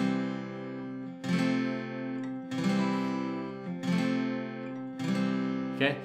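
Steel-string acoustic guitar strumming single chords about every second and a quarter, each left to ring, going back and forth between a simplified four-string F major shape and a C major shape to show how alike they sound.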